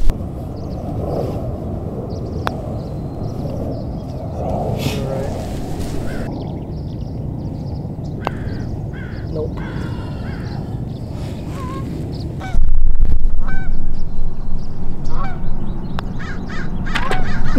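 Wind rumbling on the microphone, jumping much louder about three-quarters of the way through, with birds calling in the background. Two light clicks of a putter striking a golf ball, one early and one about halfway through.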